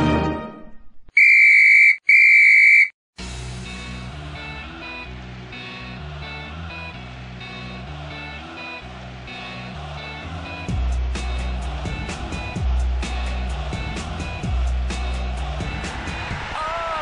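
Two loud blasts of a referee's whistle, each just under a second, one right after the other. Then background music with a steady beat, heavier percussion joining after about ten seconds.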